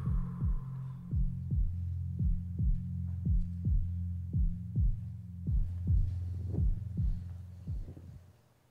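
Heartbeat sound effect: a fast run of low thumps, about three a second, over a steady low drone, fading out near the end.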